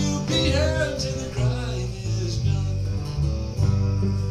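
Live bluegrass music: an acoustic guitar playing steadily under the band, with the singer's voice trailing off at the end of a line in the first second or so.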